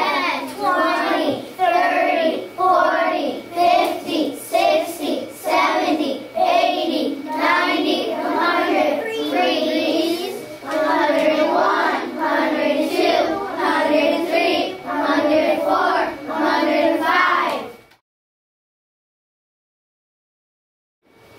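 A group of young children singing together in a steady rhythm, with their voices rising and falling in short phrases. The singing cuts off suddenly near the end.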